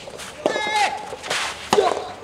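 Soft-tennis racket striking the soft rubber ball once: a sharp hit near the end. A short shouted voice comes about half a second in, and a brief vocal sound follows the hit.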